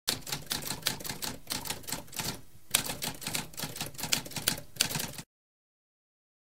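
Typewriter keys struck in a rapid clattering run, with a short pause about halfway. The typing stops abruptly about five seconds in.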